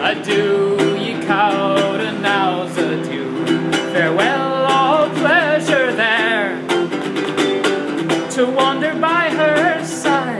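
A man singing a slow folk ballad to his own strummed small acoustic guitar, the voice coming in phrases with short gaps while the strumming carries on steadily underneath.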